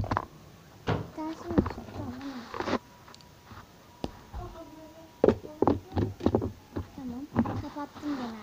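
Hollow plastic surprise eggs knocking and clattering in a plastic bowl as a hand rummages through them: a string of sharp, irregular knocks.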